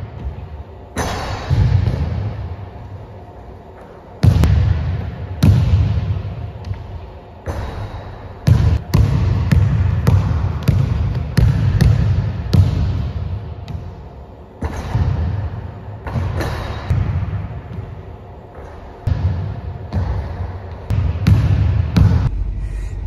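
A basketball bouncing again and again on a hardwood gym floor during solo shooting, at irregular intervals. Each hit rings on in a long echo through the large, empty gym.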